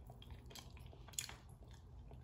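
Faint chewing of a bite of air-fried jerk Cornish hen, with a few soft mouth clicks, the sharpest just over a second in.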